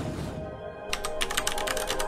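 Computer keyboard typing sound effect: a quick run of key clicks, about ten a second, starting about a second in, over steady background music.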